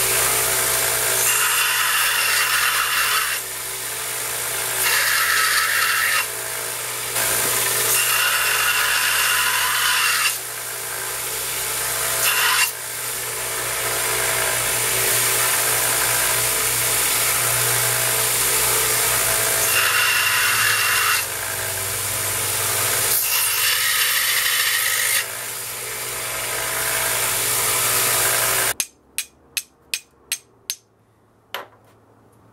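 Belt grinder running with a steady motor hum, the steel striker pressed against the abrasive belt in repeated grinding passes of a few seconds each. Near the end the grinder sound stops suddenly and a few sharp taps follow.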